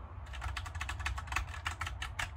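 Filco tenkeyless mechanical keyboard being typed on in a quick run of key clicks, starting about a quarter second in, as a password is entered. Every keystroke registers, showing that the keys all work.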